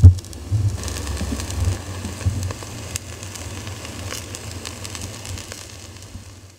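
Meat sizzling and crackling on a small charcoal grill, with a low rumble underneath; the sound slowly fades out toward the end.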